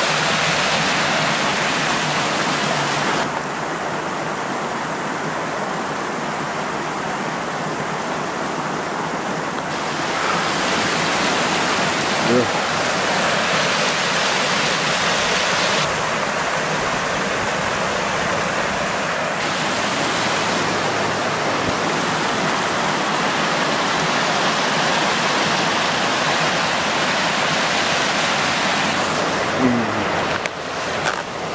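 Fast, swollen river water rushing and churning over rocks as white water: a loud, steady rush whose brighter, hissing part drops away and returns abruptly a few times.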